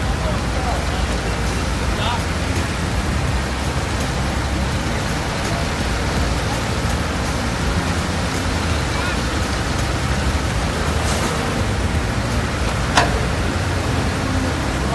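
Steady street noise with a low rumble of vehicle engines and indistinct voices of people nearby; a sharp click near the end.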